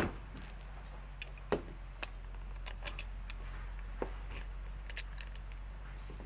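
Small metal clicks and taps as the barrel wedge of an 1849 Colt Pocket cap-and-ball revolver is driven out of its frame for takedown: one sharp click at the start, then about ten fainter, irregular taps.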